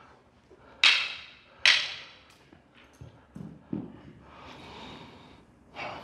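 Two sharp smacks of contact about a second apart as two martial-arts partners engage in a stick disarm drill, followed by a few soft thuds and shuffling of feet and bodies on the mat.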